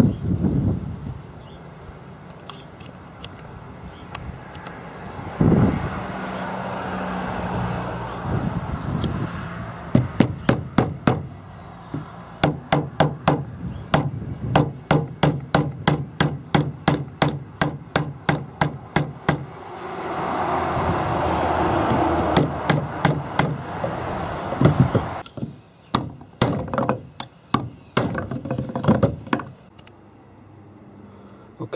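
A steel hammer taps repeatedly on the steel pin and shift stub of an NV4500 shifter lever, which lies on a wooden bench. The strikes come in long runs of sharp metallic hits, about three a second. Between the runs a steady rushing noise rises and falls.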